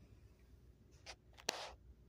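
A sharp click about a second and a half in, followed at once by a short scrape, with a fainter brushing sound just before it, over low background noise.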